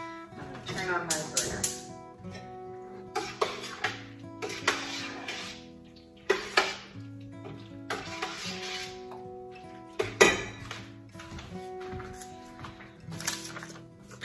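Soft background music with held notes, under a utensil knocking and scraping against a stainless steel stock pot a dozen or so times as peaches are stirred together with pectin and lemon juice for jam.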